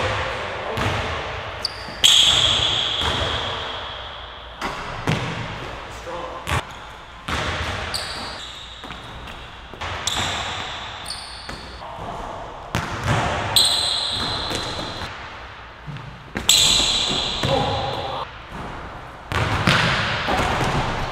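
Basketball bouncing and thudding on a hardwood court in a large empty gym, each hit echoing. The hits are irregular, the loudest about two seconds in, and a few are followed by a high ringing tone lasting a second or so.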